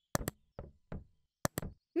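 A quick, uneven run of about seven short knocks, some in close pairs, each dying away briefly.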